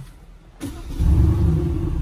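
Aston Martin DB11 engine starting: the starter whirrs about half a second in, then the engine catches with a loud low rumble about a second in and runs on steadily.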